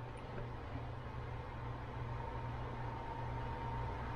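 Steady low hum with an even hiss and a faint thin whine: kitchen background noise, with no splash or sizzle standing out.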